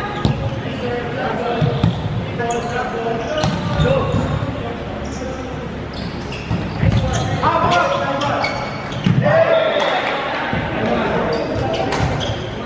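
Volleyball rally in an echoing sports hall: players calling and shouting to each other, with the sharp smacks of the ball being hit at intervals. The loudest calls come a little past the middle.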